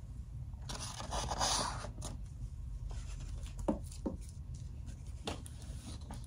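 Soft rustling and scraping of a plush hand puppet handling a picture book, its fabric brushing the paper, with a louder rustle about a second in and a few small taps later.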